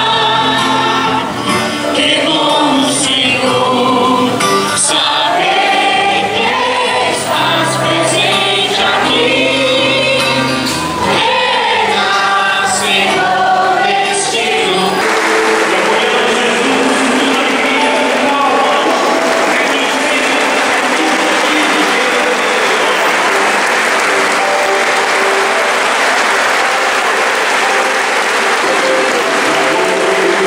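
Sacred hymn sung by many voices with accompaniment. About halfway through it gives way to a crowd applauding steadily, with faint singing underneath.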